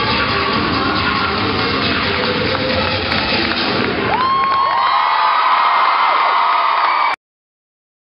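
Loud cheer-routine mix music; about four seconds in the music's bass drops out and a crowd's high screams and cheers take over as the routine hits its final pose. All sound cuts off suddenly a little after seven seconds.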